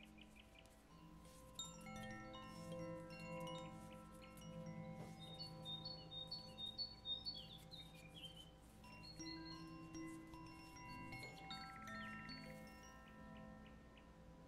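Faint meditation music: wind chimes ringing over soft held tones, with a flurry of quick high chime notes a little past the middle.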